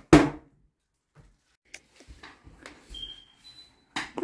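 An old plastic toilet lid drops shut onto the seat with one sharp bang right at the start, followed by a few faint scattered knocks.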